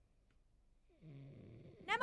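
A faint, low snore from a sleeping man, lasting under a second, about a second in.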